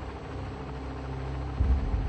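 Steady low drone of an aircraft engine, with a louder low swell about one and a half seconds in.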